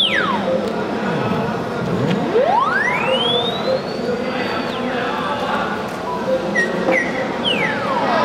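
Theremin sweeping in long, smooth pitch glides: a falling swoop at the start, then a slow rise from very low to a high held note that drops away about four and a half seconds in, and another falling swoop near the end, over a busy background with faint short steady tones.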